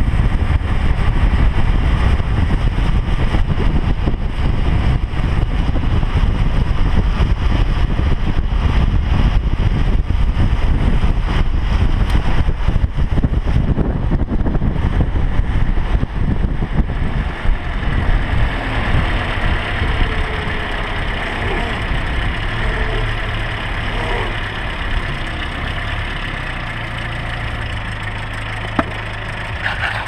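Wind rushing and buffeting over a car-mounted action camera's microphone, with the follow car's engine and road noise underneath. The rumble is heavy at speed and eases after the middle to a steadier, quieter engine hum as the car slows.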